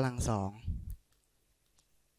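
A man's voice ends a word about a second in, then near silence broken by a few faint clicks of a stylus tapping on a tablet screen as he writes.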